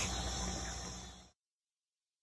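Steady outdoor background hiss, with no distinct events, that cuts off suddenly into dead silence a little over a second in.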